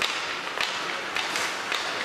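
Ice hockey play: skate blades scraping the ice under a steady hiss, with several sharp clacks of sticks and puck.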